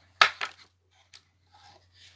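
Close handling noise: a sudden sharp rustle, twice in quick succession, then a faint tick about a second in.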